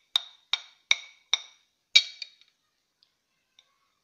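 A metal spoon tapping against a glass plate, six clear ringing clinks about every half second, knocking spice off into a bowl of mashed potato; the last and loudest comes about two seconds in.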